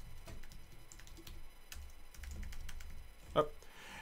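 Typing on a computer keyboard: a run of quick, irregular keystroke clicks as a command is typed out.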